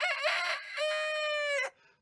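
A rooster crowing once: a choppy opening that runs into a long held note, the whole crow lasting under two seconds and stopping abruptly.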